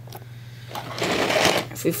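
Handling noise: about a second of scraping and rattling as the plastic LEGO model is moved by hand.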